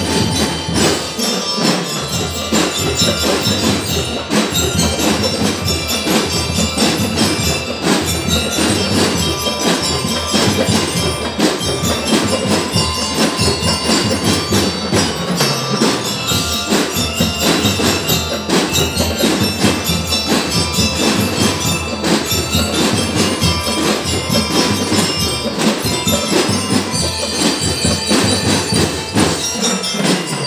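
A drum and lyre corps playing: bell lyres and mallet-struck keyboard instruments carry a ringing melody over continuous drum percussion.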